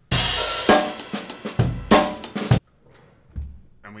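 Drum kit playing a simple beginner groove of bass drum, snare and cymbal for about two and a half seconds, then stopping abruptly.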